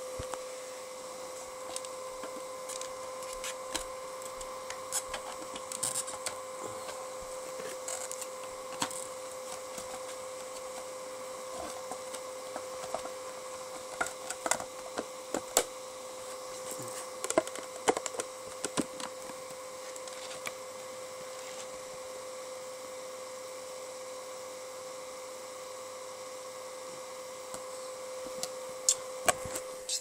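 Scattered clicks and knocks of a project box and its parts being handled and fitted back together, over a steady electrical hum.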